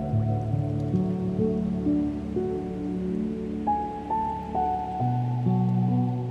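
Slow, gentle new-age piano music: a soft melody of single notes over long-held low notes. A faint hiss of water runs underneath.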